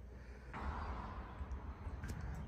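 Faint room tone: a steady low hum and hiss, slightly louder from about half a second in.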